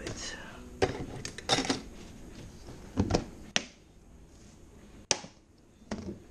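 Clicks and knocks of a black plastic box and its lid being handled and shut, several separate sharp knocks with quieter rustling between.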